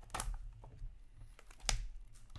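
Two sharp clicks about a second and a half apart as hands open a small cardboard trading-card box, over a low steady hum.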